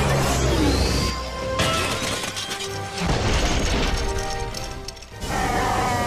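Animated-film soundtrack: dramatic music under loud crashing, shattering effects, with fresh crashes about a second and a half, three and five seconds in.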